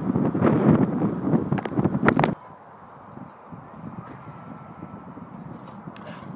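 Wind buffeting the microphone in gusts for about two seconds, with a few sharp clicks near the end. Then it cuts off abruptly to a quiet outdoor background.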